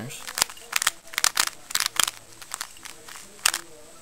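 Plastic 3x3 Rubik's Cube turned quickly by hand: an irregular run of sharp clicks as the layers snap round, thickest about a second in, with one more loud click near the end.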